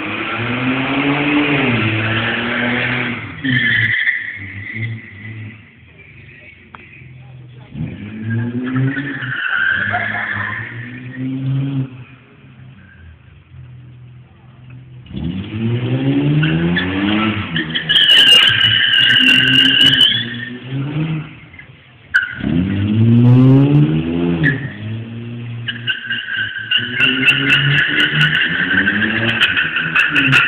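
BMW E32 735i's straight-six revving hard again and again, the pitch climbing about five times, as the automatic car is driven and slid around a concrete parking garage. Its tyres squeal in long, steady squeals about two-thirds of the way through and again near the end.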